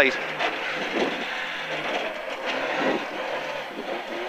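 Ford Escort Mk2 rally car's Pinto four-cylinder engine heard from inside the cabin, running low and uneven under road noise as the car slows for a tight hairpin.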